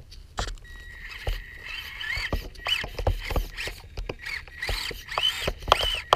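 Losi Micro 1:24 rock crawler's small electric motor and gears whining in short bursts, the pitch rising and falling with the throttle, as it crawls over rocks. Sharp clicks and knocks of the tyres and chassis against the stones come in between.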